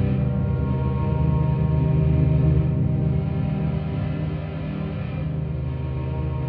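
Vienna Smart Spheres 'Waking Giants' sound-design pad played from a keyboard, a low, dense sustained drone with many overtones, run through the preset's distortion and equalizer channel.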